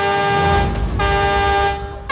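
A horn sounding two steady, pitched blasts of just under a second each, back to back.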